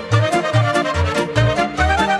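Instrumental break in a recorded Romanian folk song: a violin carries the melody over a steady bass beat, with no singing.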